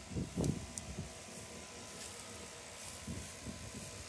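Low muffled bumps from the phone being carried as the walker steps through the grass and leaves, strongest about half a second in and again around three seconds, over a faint steady hum.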